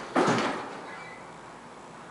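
A single loud clunk of elevator hardware about a fifth of a second in, dying away within half a second, then a low steady background.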